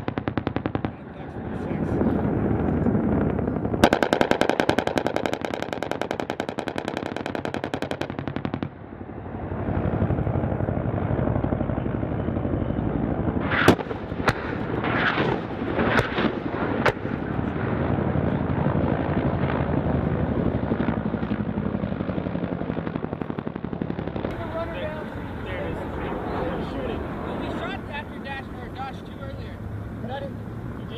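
A long burst of rapid automatic gunfire, an even stream of shots lasting about four seconds, a few seconds in. A steady rumble follows, broken by a few sharp cracks in the middle.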